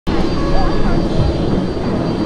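Steady airplane engine noise, with faint voices mixed in.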